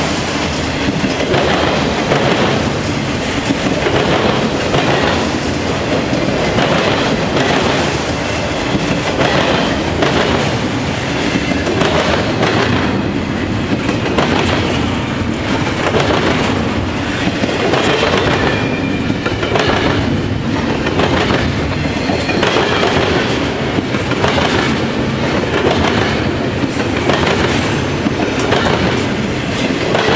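Slow-moving freight train rolling past, autorack cars and then double-stack container well cars. Steel wheels clack in a steady rhythm over the rail joints above a continuous rumble.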